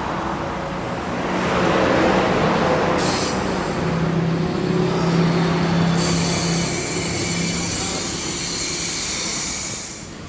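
Steady mechanical hum of workshop machinery with a low drone, and a high hiss that comes in abruptly about six seconds in.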